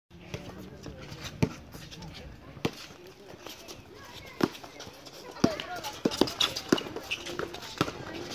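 Basketball game on an outdoor asphalt court: scattered sharp thuds of the ball bouncing and shoes hitting the court, irregularly spaced, with players' voices calling out in the second half.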